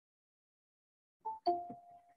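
Google Meet join-request notification chime: two quick ding-dong notes a little over a second in, the second ringing on briefly.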